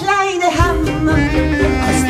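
Live band playing a swinging song on bass clarinet, bowed cello, electric guitar, accordion and double bass. Drums come in with the full band about half a second in, after held chords.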